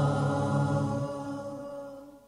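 Closing nasheed (Islamic devotional song): a held sung note that fades out over the second half.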